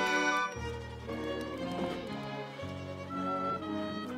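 Musical underscore from a theatre pit orchestra. A loud, full held chord breaks off about half a second in, giving way to quieter sustained string-like chords over a low bass note that changes twice.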